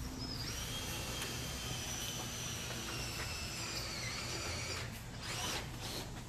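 A small motor whining steadily at a high pitch, a fainter lower tone under it, for about four and a half seconds; its pitch sags slightly before it stops. A short rushing noise follows near the end.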